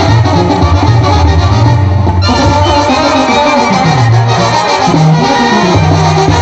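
Live Mexican brass banda playing at full volume: a sousaphone holds low bass notes, with one sliding bass line about four seconds in, under trumpets and other brass.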